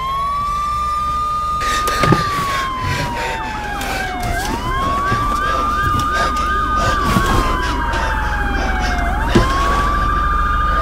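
Emergency vehicle siren in a slow wail: the pitch climbs, holds high for a couple of seconds, then slides down before climbing again, one cycle about every five seconds, with other overlapping siren tones layered above it.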